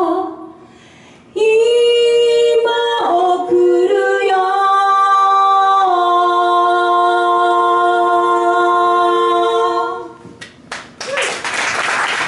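Two women's voices singing unaccompanied in harmony, closing the song: a short break near the start, then a few pitch changes and a long held chord that ends about ten seconds in. Applause breaks out about a second later.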